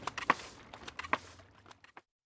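Irregular wooden knocks and clatter from a reconstructed Roman two-cylinder force pump as its rocking handle is worked to squirt water, growing fainter near the end.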